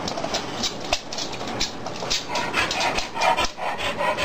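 Dog claws clicking and scuffling on a hardwood floor as the dog moves about, with a short dog vocal sound in the second half.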